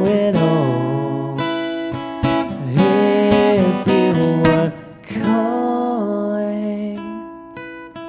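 Music: a strummed acoustic guitar accompanying long, held vocal notes between the lines of a slow pop song.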